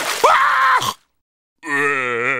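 A cartoon larva's nonsense-language voice crying out in distress: a short, anguished cry with sliding pitch, then, after a brief pause, a long held groan that wavers slightly.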